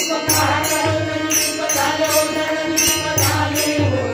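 A devotional bhajan played live: voices singing a chant-like melody to harmonium and tabla, with bright metallic strokes, small hand cymbals, keeping a steady beat.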